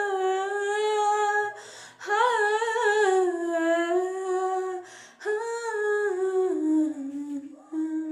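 A woman's solo voice singing unaccompanied in three long, wavering held phrases with short breaks between them, the last phrase stepping down in pitch.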